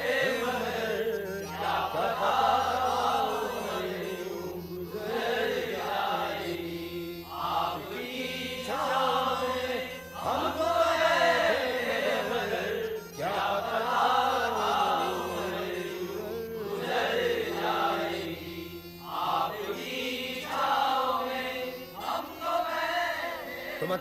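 Male voices chanting a devotional song over music, in sung phrases of a couple of seconds each with a steady drone underneath.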